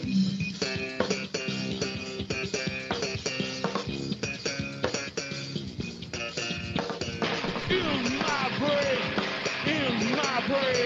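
A metal band playing live: a drum kit keeps a steady beat under distorted electric guitars and bass guitar. About seven seconds in, sliding, bending pitches come in over the top.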